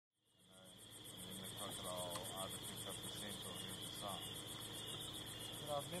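Night insect chorus fading in: crickets trilling steadily, with a faster, evenly pulsed chirping above it. Soft voices are heard now and then.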